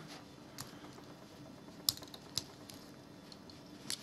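A few small, sharp clicks from a Gerber Dime multi-tool as its folding implements are worked, the sharpest about two seconds in, over faint room tone.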